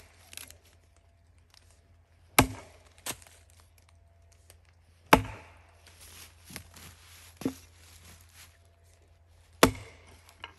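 Single-bit axe chopping into a log: three sharp blows about two and a half seconds apart, with a couple of lighter knocks between them.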